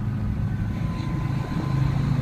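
Car interior sound while driving: a steady low drone of engine and road noise. The pitch of the drone shifts about one and a half seconds in.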